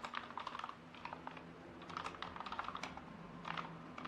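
Faint typing on a computer keyboard: a few quick runs of keystrokes with short pauses between, as a terminal command is entered.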